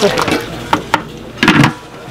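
Two sharp knocks of metal cookware about a second in, followed by a short burst of a voice.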